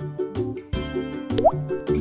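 Children's background music with a steady beat, and a short rising bloop sound effect about one and a half seconds in.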